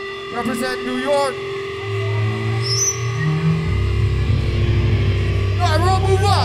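Brief voices, then a low sustained note from the band's amplified instruments comes in about two seconds in, shifts in pitch, and settles into a deeper held note that runs on under a steady amplifier hum.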